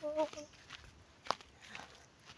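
Footsteps walking on a path through vegetation, after a short bit of a woman's voice at the very start, with one sharp click a little past the middle.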